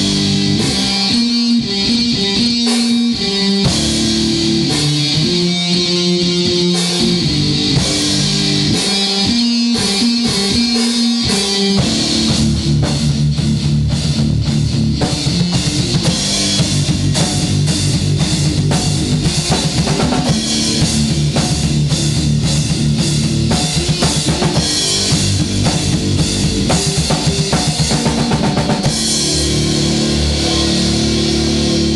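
Instrumental metal band practice: electric guitar riffs and a drum kit, with no vocals. For the first twelve seconds or so the riff is stop-start with short breaks; then the drums drive a fast, steady beat under continuous guitar.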